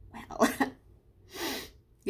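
A woman's short voiced sound about half a second in, followed about a second later by a sharp breathy burst of air.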